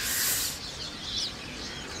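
Birds chirping in short calls. A brief rush of noise at the very start is the loudest sound.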